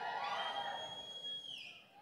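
A single long whistle from the audience, held at a steady high pitch for over a second and then sliding down and fading, over faint hall reverberation.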